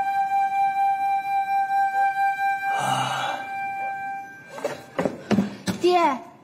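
Background music: a long held woodwind note over soft accompaniment, fading out about four seconds in. It is followed near the end by several sharp knocks.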